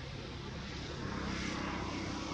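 A steady engine drone, swelling and dropping in pitch about a second and a half in as it passes.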